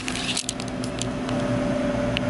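A steady mechanical hum in the room, holding two faint steady tones, with a few light clicks from the camera being handled and turned.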